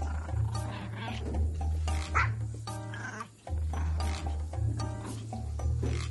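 A Pomeranian barking over background music that has a steady bass line.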